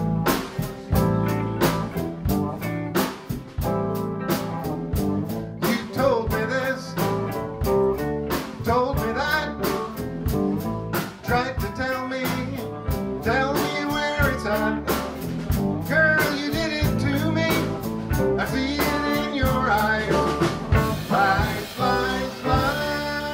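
Live blues band playing: electric guitars over a drum kit keeping a steady beat, with a melody line of bent, gliding notes from about six seconds in.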